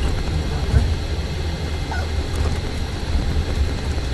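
Steady low rumble of a bus's engine and road noise heard inside the passenger cabin while it drives, with a brief thump just under a second in.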